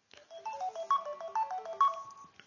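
A short electronic melody of quick single tones stepping up and down, ending on a held note.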